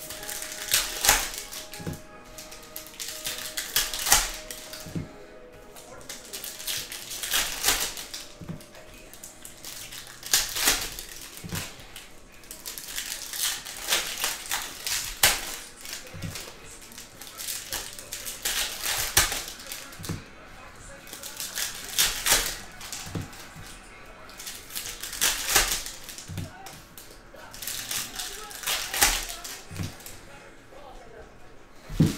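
Trading-card packs being opened by hand and the cards handled and stacked, a run of short crinkling rips and card flicks coming every second or two.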